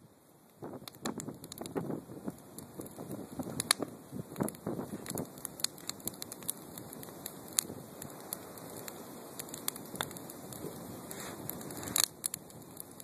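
Wood fire burning in a metal fire ring, crackling with many sharp, irregular pops. A low rushing noise sits under the pops in the first half.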